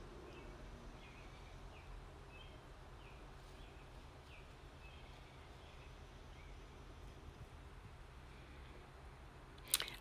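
Quiet background with a steady low hum and faint, short high chirps recurring every half second to a second.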